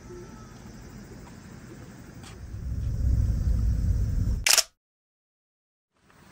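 Low rumble on a handheld camera's microphone, swelling about halfway through. A sharp click follows, and the sound cuts off to dead silence at an edit.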